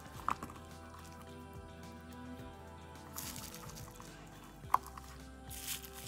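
Soft background music at low level, with two small sharp clicks and some brief rustling as a hinged metal shoe clip is handled and fitted onto a leather pump.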